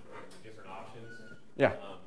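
Faint, distant speech from an audience member asking a question off the microphone, with room tone. About one and a half seconds in comes a single short, loud voice sound close to the microphone, falling in pitch.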